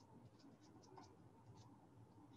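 Near silence, with faint, irregular little ticks and scratches of a paintbrush dabbing short acrylic strokes onto the painting surface.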